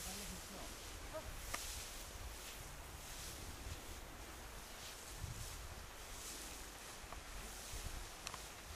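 Faint outdoor ambience with wind rumbling on the microphone, and soft swishes every second or so as threshed straw is tossed with a hand fork for winnowing.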